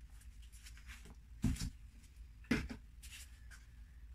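Faint handling of a plastic tub and mixing tool while an A1 resin mix is prepared, with two soft knocks about a second apart near the middle.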